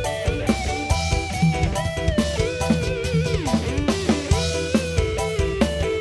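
Live band playing an instrumental passage: an electric guitar leads with notes that bend and slide in pitch, over a steady drum-kit beat and bass.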